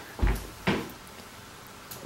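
Two brief soft knocks in the first second, the first with a dull low thump, then a quiet room.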